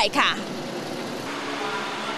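Steady road-vehicle noise from lorries, with a faint engine drone coming in over it about a second in.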